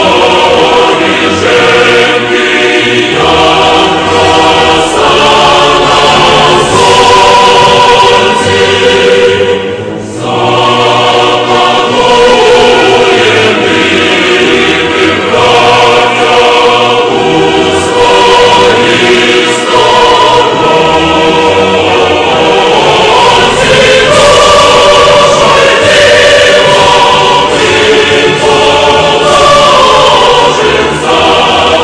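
Choir singing as background music, with long held notes that change every few seconds; it dips briefly about ten seconds in.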